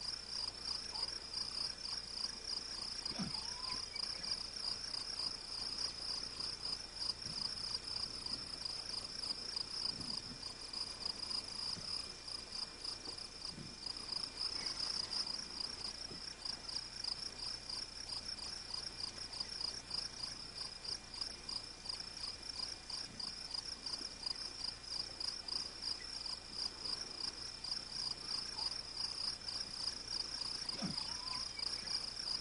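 A high-pitched insect chorus trilling steadily with a fast pulse, typical of crickets.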